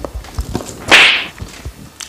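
Close-miked eating sounds: soft low chewing thuds, and about a second in one short, loud, breathy rush of air close to the microphone.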